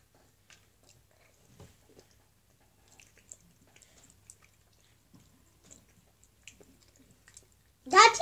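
Faint close-up chewing of candy, with scattered small wet clicks and mouth smacks.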